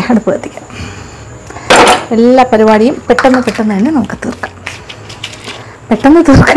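A stainless-steel pressure cooker clanks once, sharply and with a brief ring, as it is set down on the gas stove, after a few small metal clicks at the start. A woman's voice follows.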